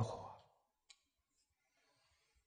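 The last syllable of a man's speech fading out, then a quiet room with a single faint click about a second in.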